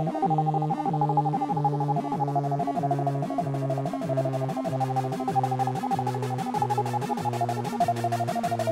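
Hardtek/tribecore electronic music in a kickless passage: held synth tones pulsing about two and a half times a second, with fast, even ticking on top.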